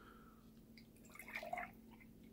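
Milk poured from a plastic gallon jug into a glass: a faint gurgle and splash of liquid that picks up about a second in.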